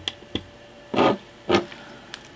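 Small plastic clicks and short scuffs of hands handling a case fan's lead and its plastic housing while the lead's connector is pushed onto the Raspberry Pi's pin header: two sharp clicks at the start, then two brief scuffs about a second and a second and a half in.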